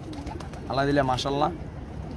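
Domestic pigeons cooing from the cages, one low call in two parts about a second in.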